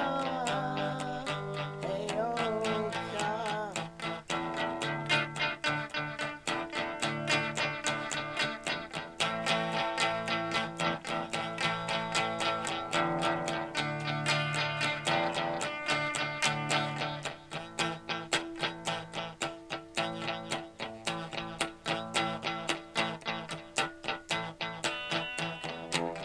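Instrumental break: electric guitar picked in a quick, dense run of notes over steady low notes, with a wavering held note in the first few seconds.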